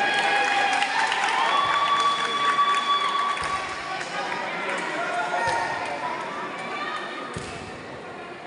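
Several people shouting and calling out across a large echoing hall, with one long drawn-out call in the first few seconds. A few dull thuds are heard later.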